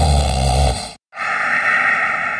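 A person snoring: a low, rattling snore on the in-breath that ends about a second in, then after a brief break a long breathy out-breath that fades away.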